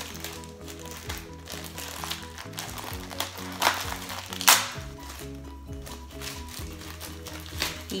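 Plastic packaging crinkling as it is pulled open by hand, with two sharp snaps a little before the middle, the second the loudest. Background music with steady held notes plays throughout.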